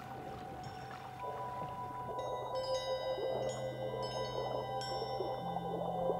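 Background music: soft sustained tones, joined from about two seconds in by a string of bell-like chime notes that ring on and overlap.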